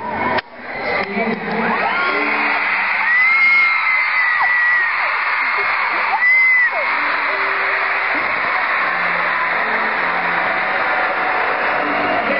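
Large concert crowd screaming without a break. Nearby fans let out shrill, drawn-out screams that climb in pitch and hold, about two seconds in and again about six seconds in.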